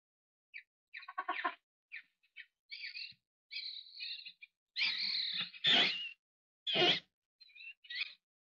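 Birds chirping and calling in a series of short separate calls, thin high chirps at first, then louder and fuller calls from about five seconds in.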